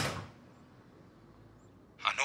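A brief sharp noise right at the start that dies away quickly, then quiet room tone.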